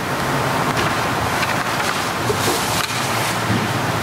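Congregation applauding: a dense, even clapping that swells in at first and then holds steady.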